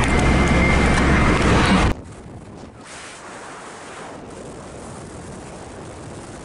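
Heavy wind noise and low rumble on the microphone in a moving car. It cuts off suddenly about two seconds in, leaving a quieter steady hiss.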